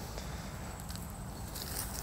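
Hands raking and sifting through loose coco coir potting mix, a faint soft crumbly rustle with a few small clicks.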